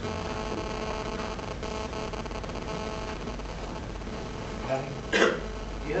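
Steady electrical and ventilation hum of a small meeting room, made of several fixed tones, with a brief throat clearing about five seconds in.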